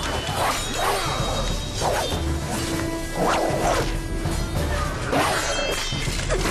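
Fight sound effects: a rapid series of whooshing swings and hard hits, roughly one a second, over dramatic background music with a low drum pulse.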